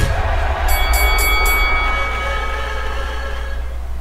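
Electronic logo-sting sound effect: a held, ringing chord that fades out after about three seconds, with four quick sparkling high chimes about a second in, over a low steady hum.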